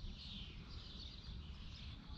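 Faint outdoor ambience: a steady low rumble with distant birds chirping.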